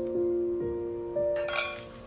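Two stemmed glasses of red wine clinking together once in a toast, a bright ringing clink about one and a half seconds in, over soft sustained piano background music.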